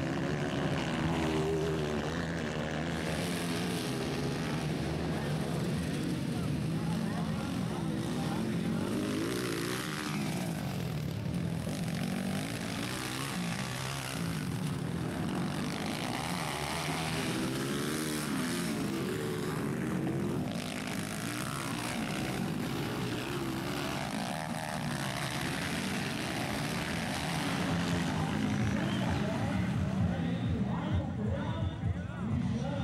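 Engines of 230cc four-stroke dirt bikes racing, revving up and falling back again and again as the riders accelerate and brake through the track's corners.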